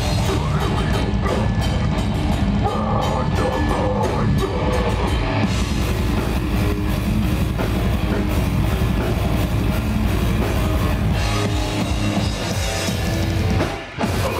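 A metal band playing live and loud, with distorted electric guitars and a pounding drum kit. The music breaks off briefly just before the end.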